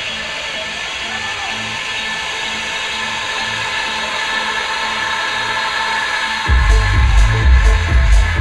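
House-techno dance music from a DJ's decks. It opens with a breakdown with no kick drum that slowly gets louder, then the bass and a steady four-on-the-floor kick drop back in about six and a half seconds in.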